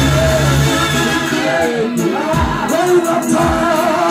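Live gospel worship song: a group of singers on microphones singing through a PA, with keyboard backing. The deep bass notes drop away about a second in, leaving mostly the voices.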